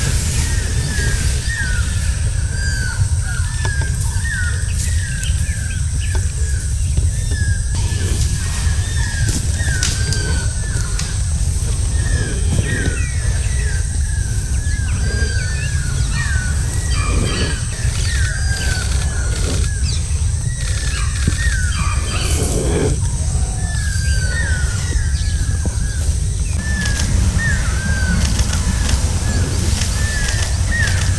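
Small birds calling continuously: a quick run of short, hooked chirps, several a second. Under them runs a constant low rumble and a thin, high, steady tone.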